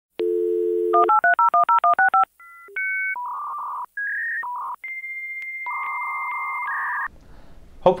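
Dial-up modem connecting: a steady dial tone, a quick run of about ten touch-tone digits, then the modem handshake of beeps and a long high answer tone, ending in hissing data noise that cuts off suddenly about seven seconds in.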